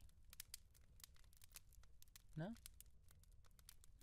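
Near silence with faint, irregular crackling clicks scattered throughout, and one short spoken word from a man about two and a half seconds in.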